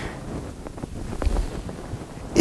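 A pause in speech: low, even room noise on a clip-on microphone, with a few faint clicks and a soft low thump a little past halfway.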